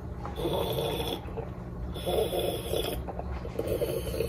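Gulping water from a plastic water bottle close to the microphone: three swallows, each under a second, about a second and a half apart.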